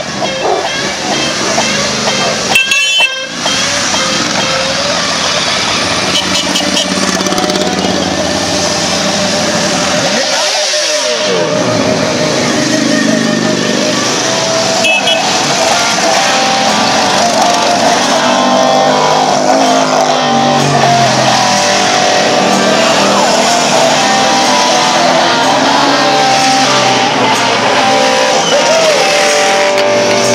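A column of motorcycles riding past one after another, their engines running steadily. About ten seconds in, one passes close with a sliding engine note.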